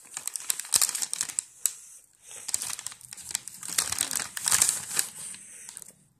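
Plastic Cheez-It cracker bag crinkling and rustling as it is handled, in two runs of crackles with a short lull about two seconds in.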